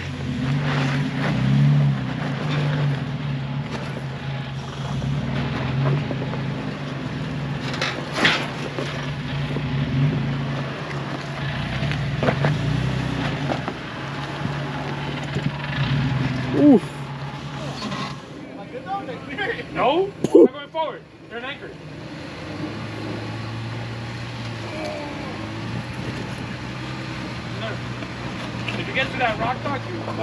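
Toyota FJ Cruiser's 4.0-litre V6 running at low revs as it crawls over snow-covered boulders, with a few sharp knocks of tyres and underbody on rock, clustered about two-thirds of the way through.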